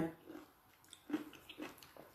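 A few faint, short mouth sounds from a person, spread across the pause.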